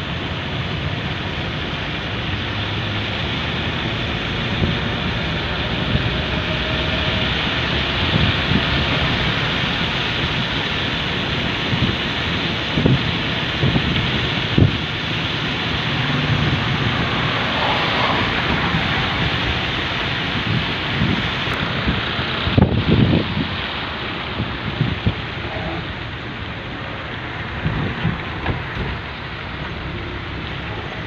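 Steady rushing noise of a vehicle driving on a wet road in the rain, tyre hiss and wind mixed together, with a few low thumps of wind buffeting the microphone, the loudest about two-thirds of the way through.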